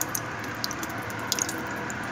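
Thick fermented milk kefir pouring from a glass jar into a plastic mesh sieve: soft wet splats and drips, with a few small sharp clicks at the start and again past the middle.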